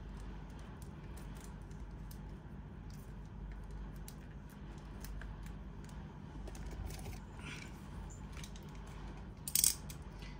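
Small clicks and crinkles of a sealed perfume box's packaging being opened by hand over a low steady hum, with a louder crackle near the end.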